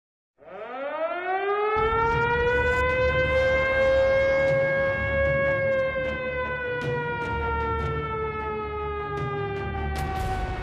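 A siren wailing: it rises quickly from silence at the start, holds a steady pitch, then slowly sinks through the second half, over a low rumble.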